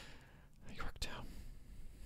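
Faint breathy, whisper-like sounds from a person close to a microphone, with one sharp click about a second in.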